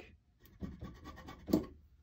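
Small knife blade cutting and scraping at the bottom edge of a suede leather golf grip, a few faint scratchy strokes with one louder stroke about one and a half seconds in. The suede is cutting raggedly, possibly because the knife isn't as sharp as it needs to be.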